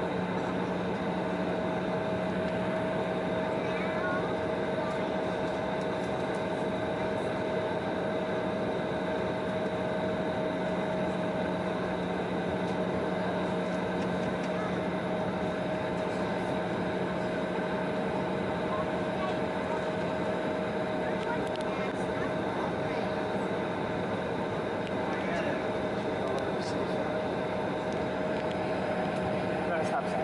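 Steady drone inside the cabin of a taxiing Embraer 170 jet, its twin engines at idle with the cabin air running, a constant hum running through it.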